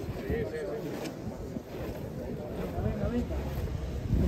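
Indistinct voices mixed with the uneven shuffling and scuffing of many feet on the street, as a team of costaleros walks in step under a heavy float.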